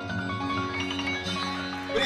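Closing notes of a slow acoustic ballad on an electronic keyboard: sustained chords with a bell-like tone ringing out. A burst of audience cheering starts right at the end.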